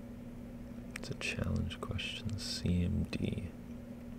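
A person mutters a few half-whispered words under their breath, starting about a second in and lasting a couple of seconds, over a steady low hum.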